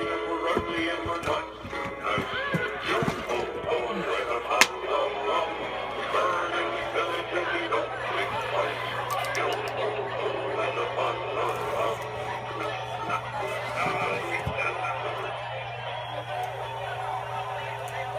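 Animated pirate toy rising out of a treasure chest, playing its recorded music and voice through a small speaker.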